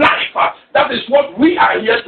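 Speech: a person talking, with a brief pause a little over half a second in.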